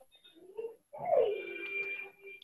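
A bird cooing: a short low coo, then a longer one that slides down in pitch and holds for about a second.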